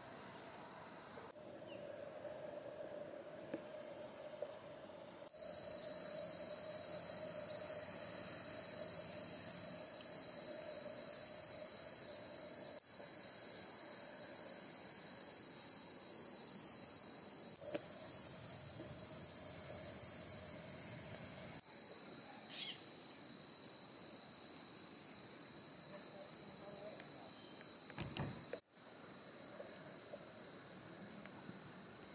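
A steady, high-pitched chorus of summer insects in tall grass. It jumps abruptly in loudness several times, louder for a stretch in the middle, where different shots are cut together.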